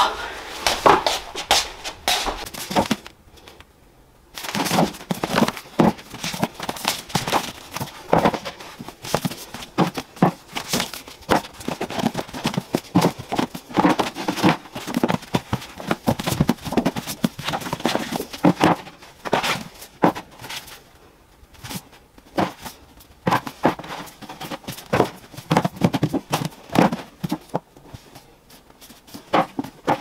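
Books being handled, lifted out of a plastic laundry basket and set onto shelves: a steady run of knocks, taps and rustles, with a brief lull about three seconds in.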